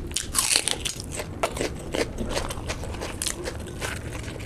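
Raw onion bitten into with a loud, crisp crunch about half a second in, then chewed with repeated sharp crunches.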